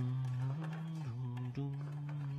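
A low voice singing long held notes, each sliding up into pitch and then stepping up or down to the next note.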